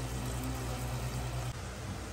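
Shredded chicken sizzling in a hot, oily pot as it is stirred: a steady hiss over a low hum that stops suddenly about a second and a half in.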